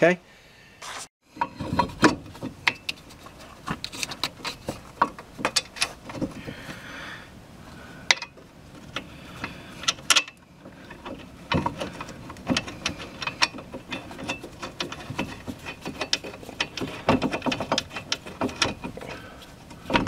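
Irregular metallic clicks and knocks as a brake caliper and its bracket are handled and worked into place over a new disc rotor.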